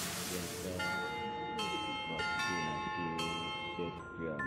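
A melody of bell-like chime notes starting about a second in, struck one after another, each ringing on under the next, over faint voices.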